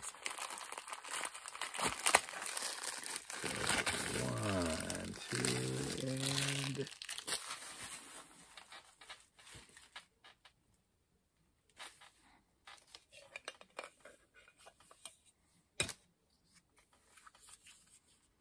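Packaging of a Funko Vinyl Soda figure being torn open and crinkled by hand for about the first seven seconds, then a few scattered light clicks and one sharper click near the end.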